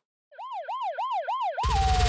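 Siren sound effect in a fast yelp, its pitch sweeping up and down about three times a second, then gliding down as electronic music with a steady beat starts about one and a half seconds in.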